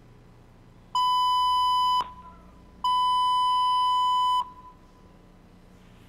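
Police dispatch radio alert tone: two loud, steady electronic beeps at one pitch, the first about a second long and the second about a second and a half. They mark the all-units broadcast of an officer's end-of-watch last call.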